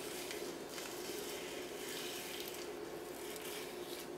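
Quiet room tone with a steady low hum, and faint rustling of a thin plastic strip being peeled slowly away from buttercream frosting.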